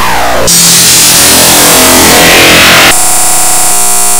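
Loud, harsh, heavily distorted electronic sound with no speech. It is a dense noisy wash that switches abruptly near three seconds in to a buzzing set of steady tones, which shifts again just before the end.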